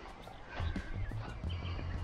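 Faint background music, with low, irregular thumps from a handheld camera being carried on a walk.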